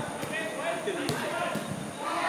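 Footballers shouting and calling to each other during play, with a single sharp knock of the ball being kicked about a second in.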